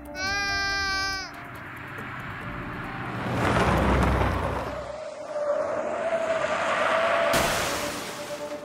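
A car's tyres running off the road onto a gravel shoulder with a rising rush of noise, then a sudden loud crash near the end as the car strikes a tree. The crash follows a short pitched wail about a second long, falling slightly in pitch, near the start.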